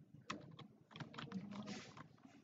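Faint, irregular clicking of a computer keyboard, about six sharp clicks over two seconds.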